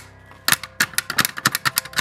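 Rapid, irregular plastic clicks and taps as a toy figure's paw is jabbed at a plastic toy vending machine's knob, starting about half a second in.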